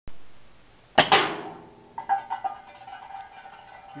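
A single shot from a Rossi 5.5 mm (.22) air rifle about a second in: a sharp crack, then a second crack right after it, with a short ring. About a second later come a few light metallic clatters and a faint ringing tone, which fits the struck can knocked down and rattling.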